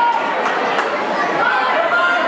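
Crowd chatter: many voices talking at once and overlapping, at a steady level, with no single voice standing out.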